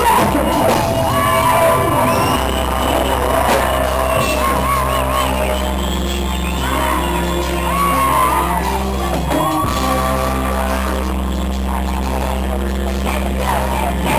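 A live reggae-dancehall band plays with keyboards, drums and a heavy, steady low bass. Voices sing and shout over the music.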